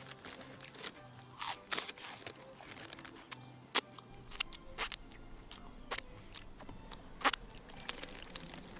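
Close-up crunching and chewing of crisps, a run of sharp, irregular crunches with mouth and finger-licking sounds, the loudest crunches a little before halfway and near the end.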